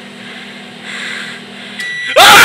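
Over-the-range microwave oven running with a steady low hum. The hum cuts off near the end as the cycle finishes, and the high end-of-cycle beep starts.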